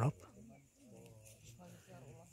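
A man's voice ends a word at the very start, then faint voices of people talking at a distance.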